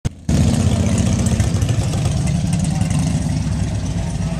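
Motorcycle engine idling close by, a steady low pulsing rumble.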